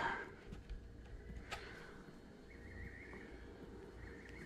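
Quiet room with a low steady hum, and a few faint clicks and rustles as fingers press air-dry modeling clay into the tear duct of a foam deer form.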